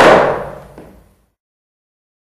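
A single loud, sharp stamp-like strike right at the start, the final accent of a flamenco dance, ringing out and dying away within about a second before the sound cuts off.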